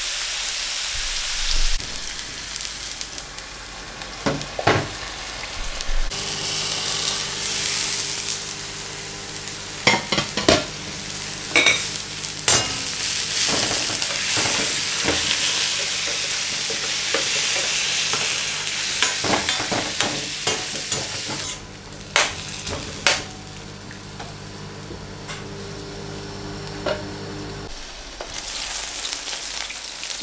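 Onions and tomatoes frying on high heat in oil in a stainless steel pan: a steady sizzle, with sharp clicks and scrapes now and then from a metal utensil against the pan. A steady low hum joins about six seconds in and stops near the end.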